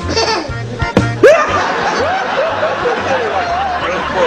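Laughter over background music with a repeating low bass line.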